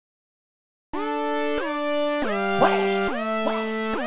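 About a second of silence, then a synth melody from FL Studio's GMS synthesizer: sustained notes that slide in pitch into each new note, changing roughly every half second to two-thirds of a second.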